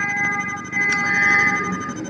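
A steady, held tone made of several pitches sounding together, with a short break in its lowest pitch about half a second in.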